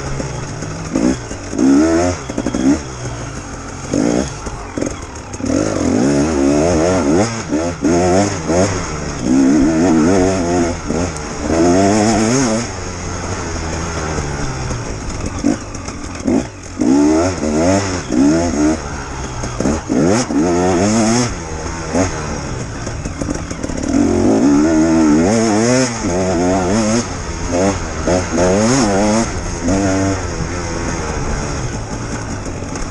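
Enduro motorcycle engine being ridden hard around a dirt track. It revs up and drops back again and again as the throttle opens and closes through the turns and bumps.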